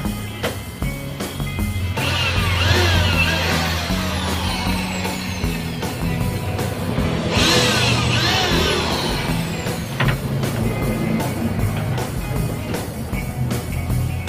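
Background music with a steady beat, over which a corded electric drill runs, boring into plywood: once from about two seconds in and again from about seven seconds in, stopping about ten seconds in.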